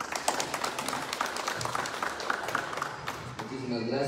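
A small audience applauding, individual hand claps distinct and fast, dying away after about three and a half seconds, when a man's voice comes in near the end.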